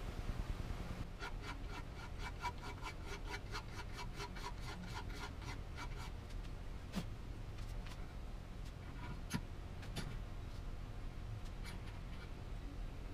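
Flat file scraping by hand across the edge of a steel axle's keyway, light strokes about four a second, then a few separate strokes near the end. The file is taking off the machining lip along the keyway that would otherwise make the bearings bind on the axle.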